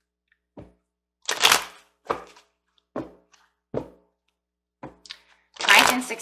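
Tarot cards being handled on a table: a string of short, sharp taps and snaps roughly once a second, with a longer rustle of cards about a second in and a louder one just before the end.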